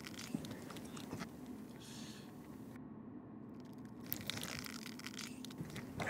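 Quiet room tone with faint rustling and small scattered clicks from two hands squeezing in a long, hard handshake.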